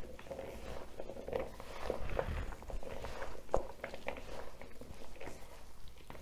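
Gloved hands mixing raw pasty filling of minced beef, diced potato, swede and onion in a bowl: a faint, irregular run of small wet clicks and rustles from the chunks being turned over, with one sharper click about three and a half seconds in.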